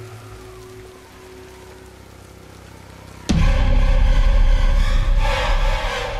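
Horror film soundtrack: soft rain and a faint held drone, then about three seconds in a sudden loud swell of rain, deep rumble and a sustained chord of score.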